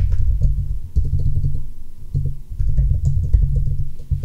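Typing on a computer keyboard: a quick, uneven run of dull keystrokes.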